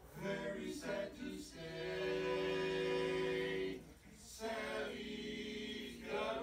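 A male vocal quartet singing a cappella in harmony: a few short notes, then two long held chords with a brief break between them.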